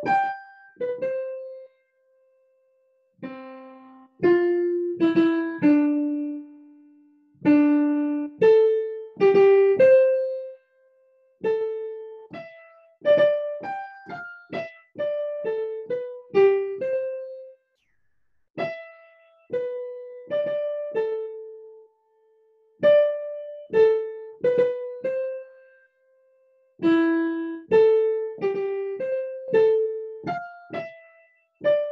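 Digital piano playing a single-note melody: a short motive repeated and varied, sometimes leaping up and going down, sometimes leaping down and going up, in short phrases with brief pauses between them.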